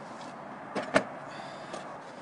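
Fishing gear being handled in a car's boot during unloading: a faint rustle with one sharp knock about halfway through, just after a smaller one.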